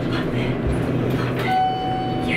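Hotel elevator car running with a steady low mechanical hum. A held tone comes in suddenly about one and a half seconds in.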